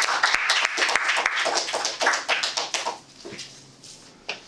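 A small audience clapping, dying away about three seconds in.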